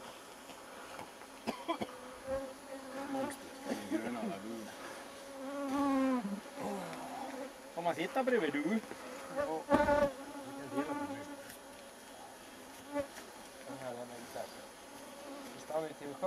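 Flying insects buzzing close by, in several passes whose pitch rises and falls as they come near and move off, with a few sharp clicks in between.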